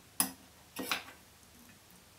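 Two sharp clicks about half a second apart from small tools being handled at a fly-tying bench. The first is short and the loudest; the second is a longer, rattling click.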